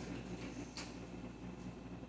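Quiet room tone with a low steady hum and one short, sharp click a little under a second in.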